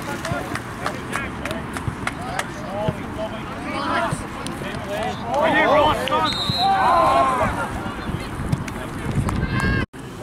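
Shouts and calls from young footballers and people on the touchline across an open pitch, loudest from about five to seven and a half seconds in. The sound cuts out abruptly just before the end.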